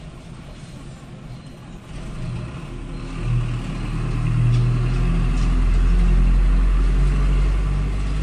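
A motor vehicle's engine rumbling, growing louder from about two seconds in and then staying loud.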